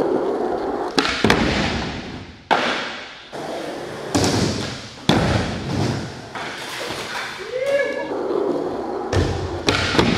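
Skateboard wheels rolling on a concrete floor, broken by a series of sharp clacks as tails pop and boards land during flip tricks. A voice calls out briefly about eight seconds in.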